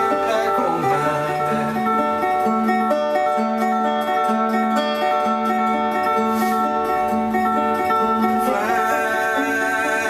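Metal-bodied resonator guitar being picked, a steady repeating bass note under a picked melody with a bright, metallic ring.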